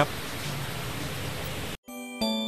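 Steady, even hiss of outdoor background ambience with no distinct events. It cuts off abruptly near the end, and music starts right after.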